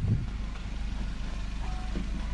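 Low, steady rumble of an idling vehicle engine, with a single thump just after the start.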